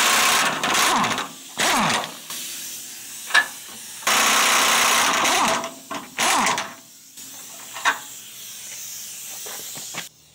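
Impact wrench run in several bursts on suspension bolts, the longest about a second and a half starting about four seconds in, with a few sharp metal clinks between bursts.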